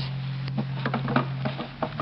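A run of small irregular clicks and taps, a radio-drama sound effect of a catch being worked on the side of a casket, over a low steady tone that shifts pitch near the end.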